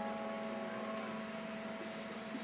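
A soft held keyboard chord from the song's accompaniment, slowly fading, with one low note sustaining steadily underneath.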